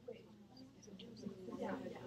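Faint, overlapping voices of students talking quietly among themselves in a lecture hall, too low for words to be made out, swelling a little near the end.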